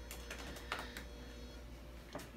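A few separate clicks of keys being pressed on an ultrasound machine's control console, over a faint steady whine that stops about one and a half seconds in.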